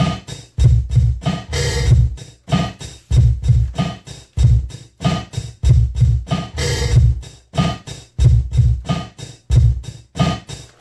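Programmed hip-hop drum pattern looping from a beat-making setup: heavy kick drums with snare and hi-hat hits, the pattern repeating about every five seconds.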